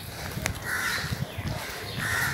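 A crow cawing outdoors, one harsh caw about a second in and another at the very end.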